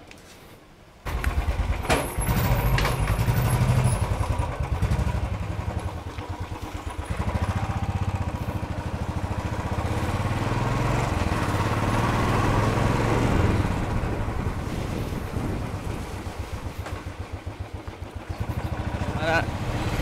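Royal Enfield Classic 350's single-cylinder engine starting about a second in, then running with an even low thump as the motorcycle pulls away and rides along, its note rising and falling with the throttle.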